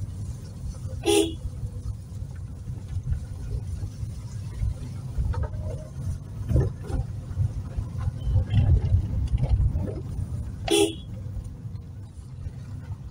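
Car driving slowly over a rutted dirt road, with a steady low rumble of engine and suspension jolting over bumps. The horn gives two short toots, one about a second in and one near the end.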